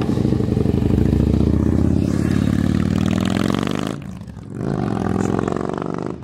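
A motor vehicle's engine driving past close by, its pitch falling as it goes. The sound dips briefly about four seconds in, then a second, quieter engine sound rises and fades.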